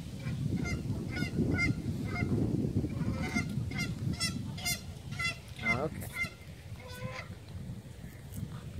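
Mute swans giving a quick series of short, nasal honking calls, a dozen or so over several seconds, over a low rumbling noise.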